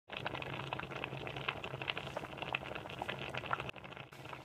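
Thick tomato sauce bubbling in a pot, with irregular small pops of bursting bubbles over a low steady hum. It cuts off suddenly shortly before the end.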